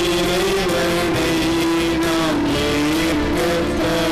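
Slow hymn music with a long held melody line that slides smoothly from note to note over a steady accompaniment.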